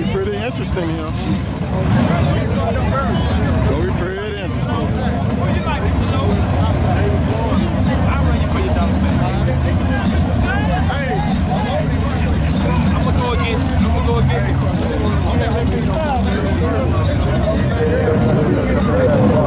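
Two drag-race cars' engines idling at the starting line, a steady low rumble throughout, with a crowd talking over it.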